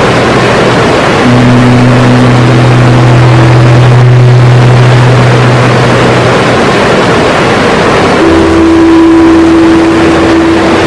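Loud, steady rushing of fast river water, with sustained low droning notes laid over it. The notes shift a few times: a new pair comes in about a second in, the lowest drops out around six seconds in, and a higher note enters about eight seconds in.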